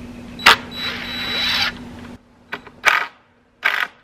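A cordless drill driving a screw into the wooden gate post: a sharp click, then about a second of whirring that builds as the screw goes in. After a sudden drop, three short knocks of wood on wood.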